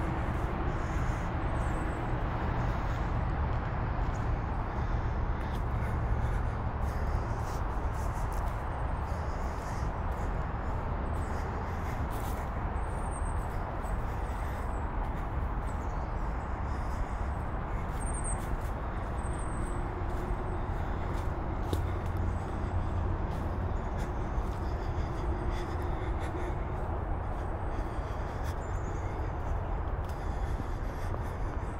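Outdoor walking ambience: footsteps on a dirt trail over a steady low rumble, with a few faint high chirps of small birds.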